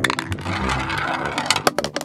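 A marble rolling and rattling through a toy marble run, with a steady rumble and a few sharp clicks near the start and again near the end.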